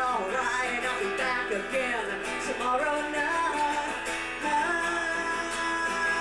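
Live rock song: a woman singing over a strummed acoustic guitar. From about halfway through, long notes are held.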